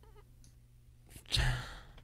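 A single short sigh, a breathy exhale with a bit of voice in it, about a second and a half in, after a nearly silent pause.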